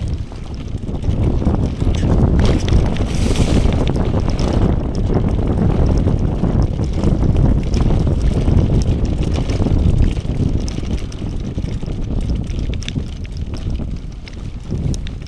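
Wind buffeting the microphone of a handlebar-mounted camera on a mountain bike riding fast down a leaf-covered dirt trail, mixed with tyre rumble and scattered clicks and rattles. It is loudest through the middle and eases off near the end.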